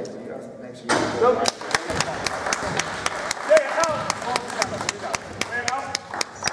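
Spectators' voices rise suddenly about a second in, shouting and cheering. Repeated sharp knocks of a basketball and players' feet on the hardwood court run through it.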